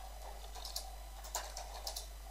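Faint typing on a computer keyboard: a few scattered, irregular keystroke clicks.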